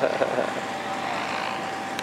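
Radio-controlled model helicopter sitting on its skids after landing, its engine idling and rotor turning: a steady whine over a rushing hiss.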